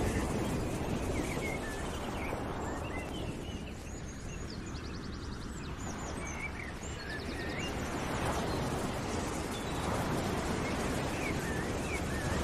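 Nature ambience: birds chirping and trilling over a steady rushing noise that swells and eases a few times.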